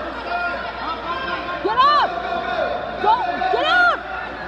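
Spectators and coaches yelling encouragement to a wrestler on the mat, in several loud shouted calls, the loudest about two seconds in and just before the end.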